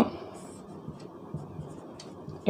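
Marker pen writing on a whiteboard: faint, short scratching strokes.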